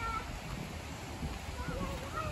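Footsteps thudding on the wooden plank deck of a suspension bridge, with several short, high chirping calls that rise and fall over them.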